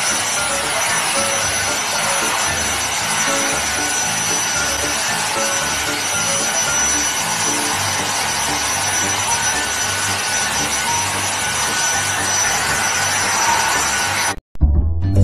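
Cordless stick vacuum running steadily with a high-pitched whine, its nozzle pressed against a cat's fur. Music plays underneath.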